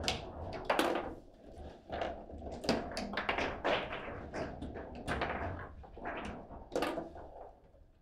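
Foosball table in play: the ball and the players' figures knocking and clacking against each other and the table in quick, irregular strikes, some louder than others.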